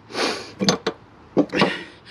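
A long valve cover bolt being drawn out of its rubber grommet by hand and laid on the Detroit Diesel Series 60's valve cover. Brief scraping, breathy noises with one sharp metallic clink about two-thirds of a second in.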